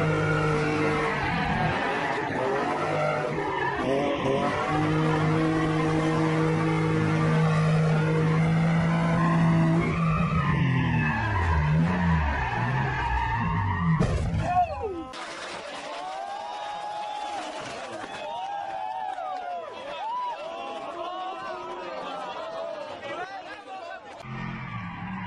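A car engine held at high revs through a drift, its note rising and falling a little, with tyres squealing. About fifteen seconds in, the engine note falls away and stops, and quieter wavering squeals carry on.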